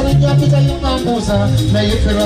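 A live band playing loud amplified music on stage, with drums, bass and guitars.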